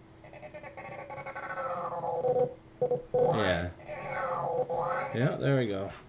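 A cartoon cat's drawn-out meow voiced by a person, sounded twice: a long wavering call that swells over about two seconds, then a second one starting about three seconds in.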